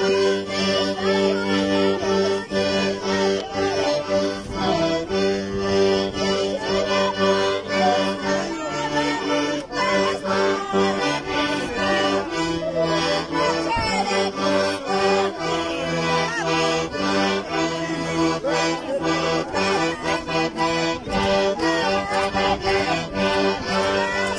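Accordion playing a traditional Andean waylia dance tune: sustained chords under a lively, ornamented melody that carries on steadily throughout.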